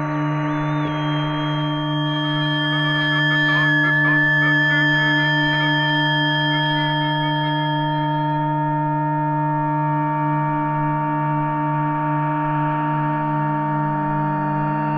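Electronic music built from shortwave radio sounds: layered steady tones over a slowly pulsing low drone. A short rising whistle comes about a second in, a flurry of warbling tones follows around four seconds, and a soft hiss comes in over the last few seconds.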